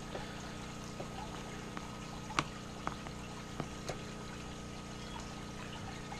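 Steady hum and trickle of aquarium filters and pumps, with a few light clicks of a metal fork against a plastic tub of instant mashed potatoes as microworm culture is worked in.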